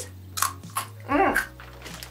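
Crunching bites into a baked black sesame rice cracker: two sharp crunches about half a second apart.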